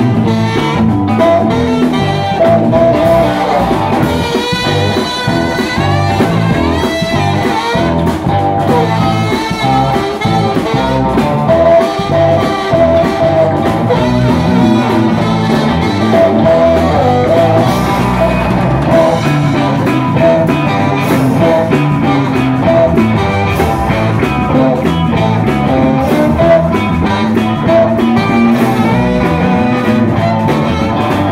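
Live instrumental rock and roll band playing: saxophone lead over hollow-body electric guitar, upright bass and drum kit, with a steady driving beat.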